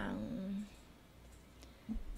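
A woman's voice holding a drawn-out syllable that ends about two-thirds of a second in, then a pause of faint room tone, with speech starting again near the end.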